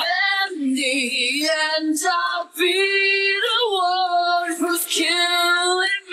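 Isolated female lead vocal from a metal song, with no instruments: long, clean sung notes that step up in pitch and waver with vibrato, broken once by a short breath about two and a half seconds in.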